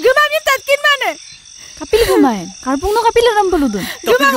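A chorus of frogs calling close by: short croaks that rise and fall in pitch in quick runs, then a couple of longer, falling calls in the second half. A steady, high insect trill runs underneath.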